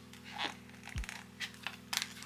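Quiet background music with a steady low drone and a deep bass hit about halfway through, under a few light clicks and taps from phones being handled.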